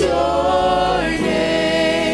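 Gospel praise team of several singers on microphones singing a worship chorus together, holding long notes and moving to new notes about a second in, over live band accompaniment.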